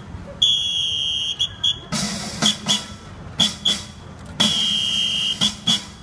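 A shrill whistle blown in a long blast followed by two short toots, twice, with drum beats coming in about two seconds in, as a song's intro starts.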